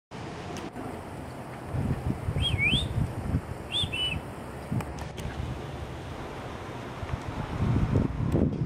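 Wind rumbling on the microphone, with a small bird giving two short warbling whistles, one about two and a half seconds in and another a second later.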